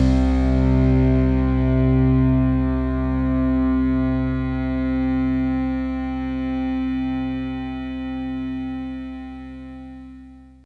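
Music: the final held chord of a rock song, a distorted electric guitar ringing out and slowly fading away with a gentle wavering swell.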